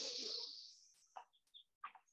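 A soft, breathy rush of air, a person's inhale, fading out within the first second, followed by three or four very faint, short bird-like chirps.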